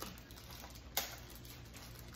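Quiet room tone with a low hum and one short, sharp click about a second in.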